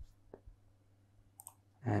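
A few faint computer clicks: one sharp click at the start, then a couple more about a second and a half in.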